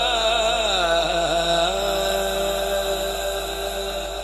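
A man's voice singing a long drawn-out vowel in a Punjabi devotional kalam (naat style). For the first second and a half the pitch winds through ornaments, then it settles into one held note.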